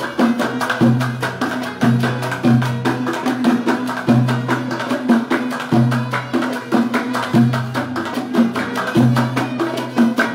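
Moroccan malhoun ensemble playing an instrumental passage: fast, even hand-clapping over oud, a bowed rbab and a plucked lute repeating a short low phrase.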